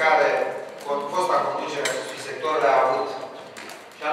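Speech: a person talking, in continuous phrases with short pauses.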